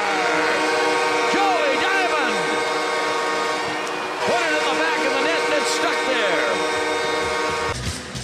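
Ice hockey arena goal horn sounding a steady chord over a cheering crowd, signalling a goal just scored, and cutting off suddenly near the end.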